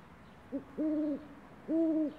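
Three hoots like an owl's, at one steady pitch: a brief one, then two longer ones each about half a second.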